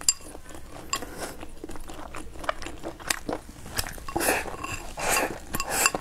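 Eating sounds: chewing, with chopsticks clicking against a ceramic rice bowl. From about four seconds in come louder, longer noisy bursts as rice is shoveled from the bowl held at the mouth.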